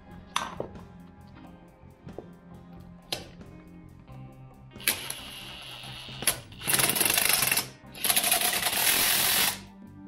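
Cordless impact driver running the wheel bolts into a small tractor's front hub. It runs in two loud bursts near the end, about one second and then about one and a half seconds long, after a quieter run about five seconds in. Blues guitar music plays underneath.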